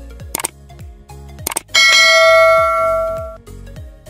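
Sound effects for a subscribe-button animation: two short mouse-click sounds, then a bright bell chime that rings for about a second and a half and dies away. A steady beat of background music runs underneath.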